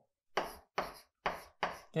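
Chalk writing on a blackboard: four short, sharp chalk strokes tapping and scraping against the board, each fading quickly.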